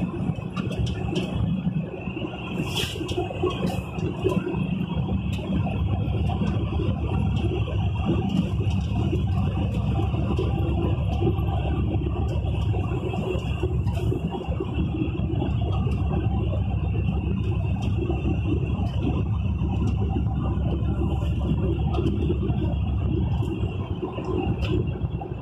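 Steady engine and road rumble heard from inside the cab of a moving vehicle at cruising speed, with scattered light clicks and rattles.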